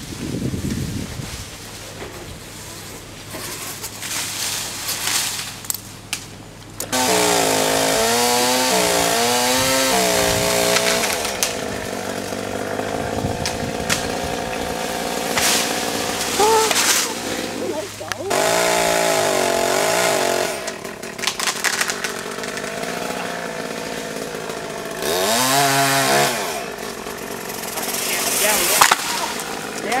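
Two-stroke chainsaw cutting limbs up in a cottonwood tree: it runs low for the first several seconds, then about seven seconds in revs up and runs hard, its pitch rising and falling as it cuts, easing back and revving again several times.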